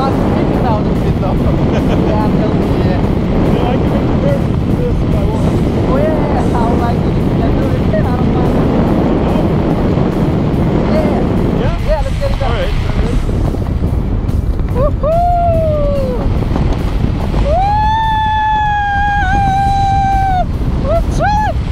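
Wind rushing over the camera microphone during a tandem parachute descent under an open canopy, a loud steady rumble. Near the end come high, pitched tones: a short one that rises and falls, then one long held tone.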